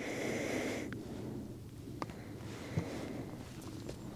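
A breath through a respirator mask during the first second, then a low hiss with two faint clicks.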